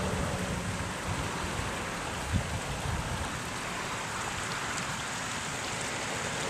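Steady rushing outdoor background noise, with one soft thump a little over two seconds in.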